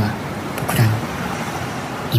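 Opening of a sped-up pop track: a steady, dense hiss like street or traffic noise fills the mix, with a deep thump and a brief snatch of voice about a second in.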